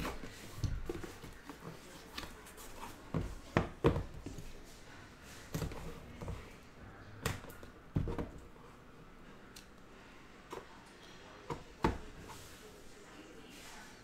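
Scattered soft taps, scrapes and clicks as a cardboard trading-card hobby box is handled: a pocket knife cutting its seal, then the small inner card boxes lifted out and set down on top of it.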